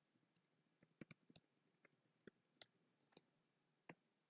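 Faint computer keyboard keystrokes: about nine short, irregularly spaced clicks as a line of code is typed.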